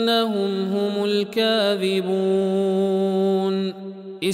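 A male voice chanting a Quran recitation (tajweed) unaccompanied, holding long melodic notes with ornamented turns in pitch. The held note stops shortly before the end.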